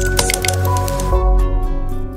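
Short logo-intro music: held tones over a heavy bass, with a few sharp clicks near the start.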